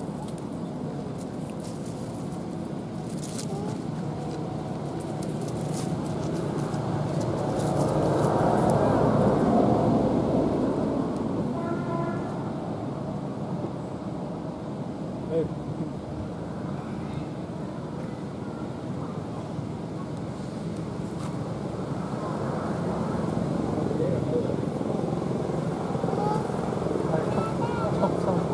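Outdoor background of indistinct voices and passing motor traffic, swelling about a third of the way in as a vehicle goes by.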